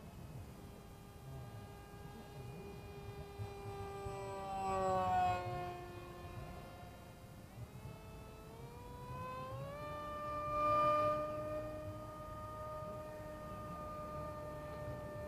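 Turnigy 2200KV brushless electric motor and propeller of an RC parkjet whining in flight. The whine swells and drops in pitch as the plane passes about five seconds in, then climbs in two steps to a higher steady whine that swells again near eleven seconds.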